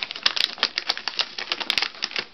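Paper wrapping crinkling and crackling as a dog noses and tugs at it, a rapid, uneven run of sharp crackles.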